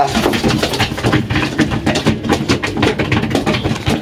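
Young racing pigeons pecking grain from a plastic trough feeder: a rapid, irregular patter of clicks and taps, with wings flapping as they jostle. A low steady hum runs underneath.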